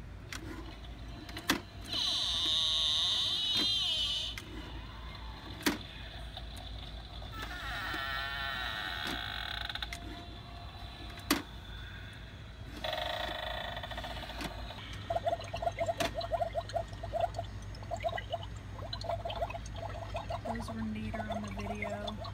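Battery-powered Halloween decorative book boxes playing short recorded spooky sound clips from their built-in speakers, one after another as their buttons are pressed. The first clip is a high wavering tone, and a few sharp clicks come between the clips.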